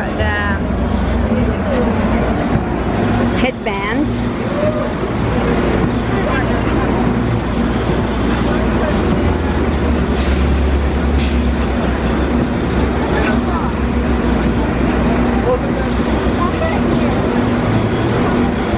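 City street noise dominated by the steady low rumble of a large vehicle's engine idling close by, with a brief hiss about ten seconds in.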